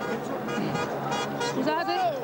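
Voices talking over each other, with music in the background.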